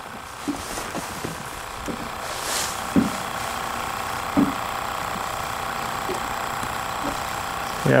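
Handling of a just-landed yellow perch aboard a boat: a few light knocks, the clearest about three seconds in and again a second and a half later, over a steady hum.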